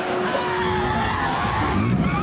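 Animated-film action soundtrack: a dense, noisy mix of battle sound effects with a wavering pitched cry gliding through it.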